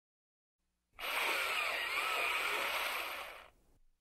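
Mechanical whirring and grinding, as of a large motorised gate sliding shut. It starts about a second in, holds for about two and a half seconds, then fades out.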